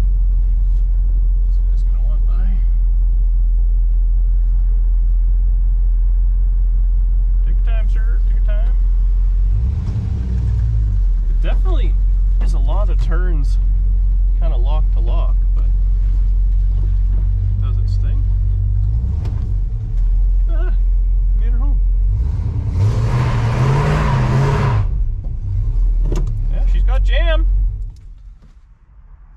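Inside the cabin of a 1968 Plymouth Satellite, its V8 runs as a steady low rumble while the car is driven. About 23 seconds in comes a louder, rising burst with a rushing noise. The engine cuts off suddenly at the end.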